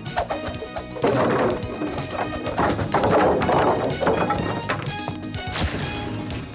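Cartoon crashing and clattering of a heap of toy building blocks tumbling and flying, starting about a second in and ending near the end, over action background music.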